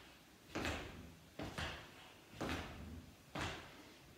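Feet landing on a hard floor with each side-to-side speed-skater hop, a thud about once a second, some landing in quick pairs.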